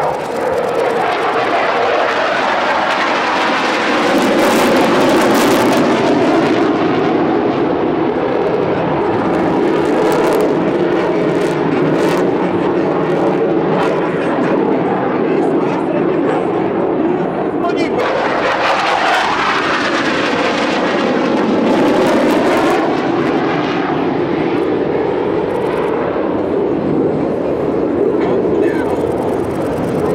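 KAI T-50B Golden Eagle jet trainers flying a low aerobatic display, their single turbofan engines running loud and continuous. The noise swells and fades as they pass, with a falling sweep in pitch as one jet goes by a little past the middle.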